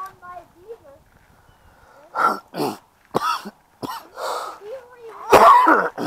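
A person coughing: a run of five or six short, harsh coughs through the second half, the last one the loudest and longest.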